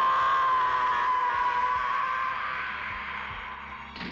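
A man's long, drawn-out scream as he falls, held on one pitch and slowly fading away. A sharp thump from his landing comes right at the end.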